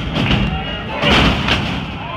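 Wrestler's body slamming onto the wrestling ring's mat: a loud, booming thud about a second in, with smaller impacts at the start and just after.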